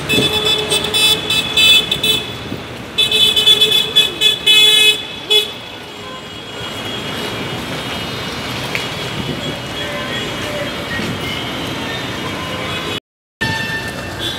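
Vehicle horns honking in repeated short blasts for about the first five seconds, then the steady noise of a busy street with traffic. The sound cuts out completely for a moment near the end.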